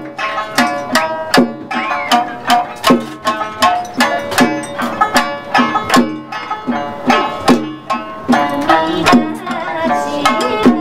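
Amami sanshin (snakeskin-covered three-string lute) plucked in a lively instrumental passage, over a steady beat of sharp strikes on a chijin hand drum, about two strikes a second.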